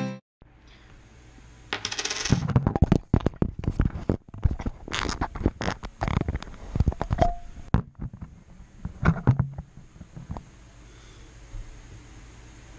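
Handling noise: a run of sharp clicks, knocks and clinks of small hard objects for about eight seconds as the camera is set up on a desk, then it stops.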